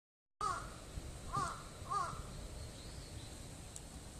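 A crow cawing three times, about half a second in, then twice more a little before and at the two-second mark.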